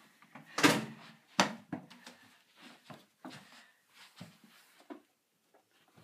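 Hurried footsteps with knocks and thumps through a house, two loud thumps about a second in, then lighter, irregular steps that stop about a second before the end.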